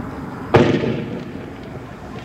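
Tear-gas launcher firing a single shot: one sharp, loud bang about half a second in, trailing off with an echo over about half a second.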